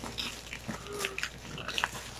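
Clear plastic wrapping crinkling and crackling in scattered short crackles as it is picked open by hand.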